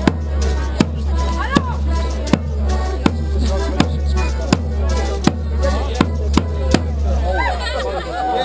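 Border Morris dance music with a sharp, steady beat about every three-quarters of a second, closing with two quicker beats about seven seconds in; voices follow.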